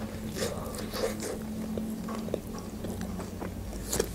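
Close-up eating sounds of a bite taken from a toasted chicken lavash wrap and chewed: small irregular mouth clicks and smacks over a steady low hum.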